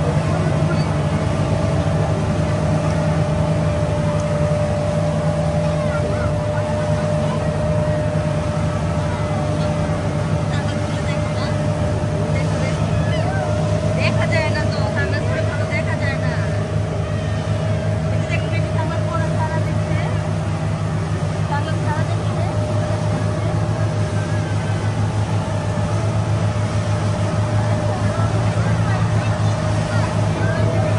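Motorboat engine running steadily at speed, a constant drone with a fainter steady whine above it, over the rush of water past the hull.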